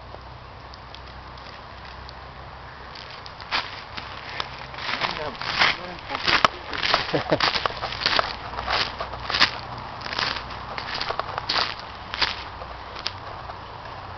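Footsteps through dry leaf litter, irregular and starting about three seconds in. A person's voice is briefly mixed in around the middle.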